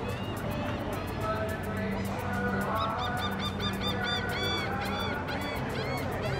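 Canada geese honking: a few faint calls, then a quick run of loud honks about halfway in, over background music.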